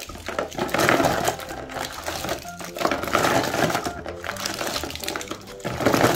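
Handfuls of small sealed plastic jelly cups stirred and scooped in a plastic box, clattering and rattling against each other and the box in three surges, over quiet background music.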